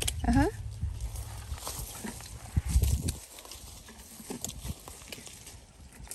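A short voiced 'oh-huh' at the start, then low wind rumble on the microphone that fades about three seconds in, with scattered light clicks and rustles of handling as the camera moves through the guava trees.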